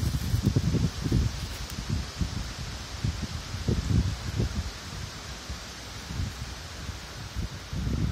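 Wind buffeting the microphone in irregular gusts, over a steady rustle of leaves and twigs.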